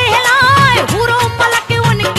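A woman singing a qawwali-style waqia song, holding wavering notes with vibrato, over a steady drum beat and instrumental accompaniment.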